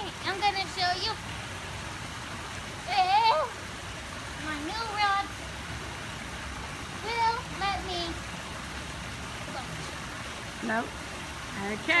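Steady rushing of a rock waterfall spilling into a swimming pool, with short high-pitched spoken calls every couple of seconds over it.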